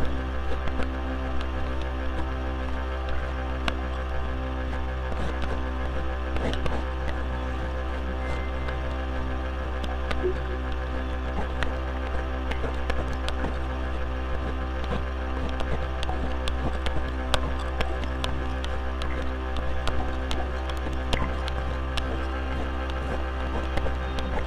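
Electronic drone music: a steady low hum under layered held tones that pulse on and off, crossed by many short scratchy clicks. The clicks are the amplified scrape of a cartridge razor on lathered stubble, worked into the music.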